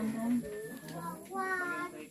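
Voices, with a high-pitched voice drawn out into one long sing-song note, slightly falling, about a second and a half in.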